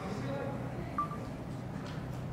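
A single short electronic beep about a second in, over a low murmur of people talking in the room.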